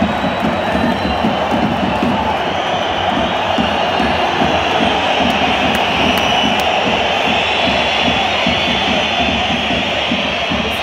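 Football stadium crowd chanting and singing loudly and without a break, a dense wall of many voices.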